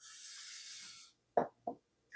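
A person drinking from a glass: a faint airy sip lasting about a second, then two short gulps.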